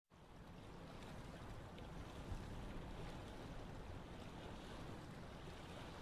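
Faint, steady rushing noise with no distinct events, heaviest in the low end.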